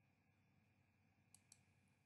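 Near silence, with two faint computer mouse clicks in quick succession about a second and a half in.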